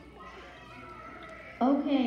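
Faint murmur, then about one and a half seconds in a loud voice starts suddenly, its pitch sliding down.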